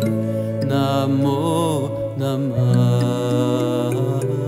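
Devotional mantra music: a voice chanting a traditional Hindu mantra over long held notes, the bass note shifting about two-thirds of the way through.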